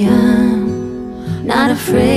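A woman singing a long held note on the word 'I', with vibrato, over a steady guitar backing; a new sung phrase starts about a second and a half in.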